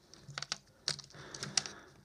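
A few irregular small clicks and taps of a head torch's plastic housing and metal parts, and a small screwdriver, being handled and knocked together.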